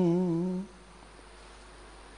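A man's voice chanting, holding one long wavering note that ends about half a second in, followed by a pause with only faint background hiss.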